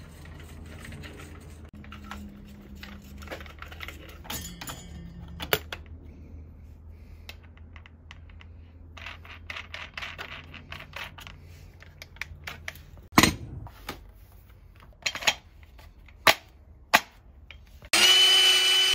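Light clicks and clatter of a Hilti cordless angle grinder being handled while its cutting disc is changed by hand, over a low steady hum. A sharp click comes a little past the middle, with a few more near the end.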